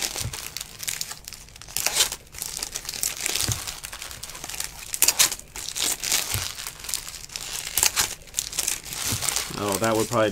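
Trading-card pack wrappers from 2019 Bowman baseball hobby packs crinkling and rustling in the hands in irregular bursts as packs are torn open and the cards handled.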